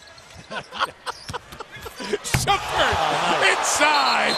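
Basketball game broadcast sound: a ball bouncing on a hardwood court among sharp impacts, while arena crowd noise builds up about halfway through.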